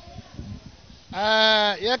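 A person's voice holding a drawn-out 'eeh' for just under a second, a hesitation sound between phrases of speech. Faint background noise comes before it.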